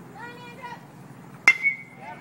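A metal baseball bat hitting a pitched ball about one and a half seconds in: a sharp crack followed by a short, high ringing ping. Faint voices come before it.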